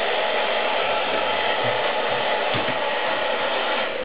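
Hair dryer running steadily, blowing air, with a couple of faint low knocks about halfway through.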